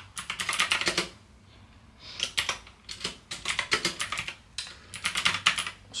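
Typing on a computer keyboard: a quick run of keystrokes for about a second, a pause of about a second, then steady keystrokes again to the end.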